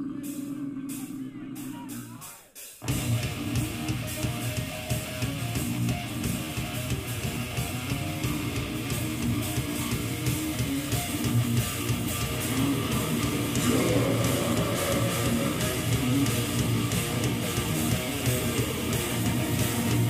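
Death metal band playing live: a single held note for the first few seconds, then distorted electric guitars, bass and drums come in together, suddenly much louder, about three seconds in and keep playing.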